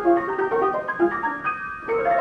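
Ampico reproducing grand piano playing a music roll: quick figures of notes in the middle and upper range, with a higher note held briefly near the end.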